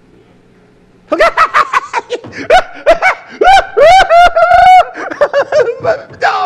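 A man laughing hard: after a quiet first second, a long run of loud, high-pitched laugh bursts, several of them drawn out.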